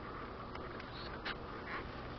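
Faint rustling of paper as pages of a 6x6 patterned paper pad are turned, a few soft brushes over a steady background hiss.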